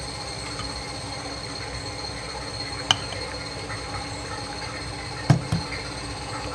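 Vacuum pump running steadily with a faint whine, drawing suction through a glass filter funnel and flask during vacuum filtration. Two short sharp clicks break in, about three seconds in and a louder one near the end.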